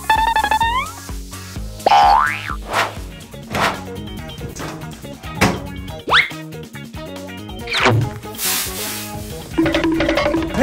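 Upbeat background music with a steady bass line, overlaid with cartoon sound effects: a wobbly boing in the first second, then quick rising whistle-like glides about two, six and eight seconds in.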